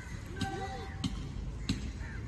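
Sharp beats in an even rhythm, about one every two-thirds of a second, keeping marching time for a drill platoon, with a brief call about half a second in.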